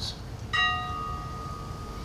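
A bell struck once about half a second in, its tone ringing on and slowly fading, the higher overtones dying away first.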